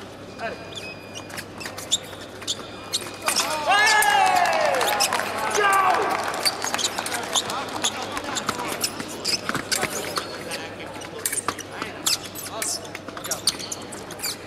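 Foil bout sounds: footwork stamping on the piste and sharp clicks of blades, with a loud, drawn-out shout falling in pitch about four seconds in and a second shout shortly after.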